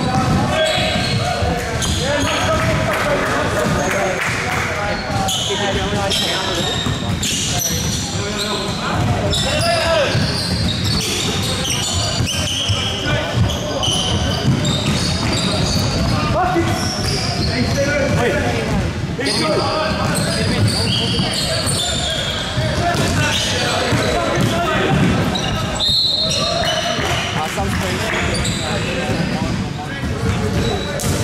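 Sounds of a basketball game in play in a gym: a ball being dribbled on a hardwood court and players' voices calling out, echoing in the hall.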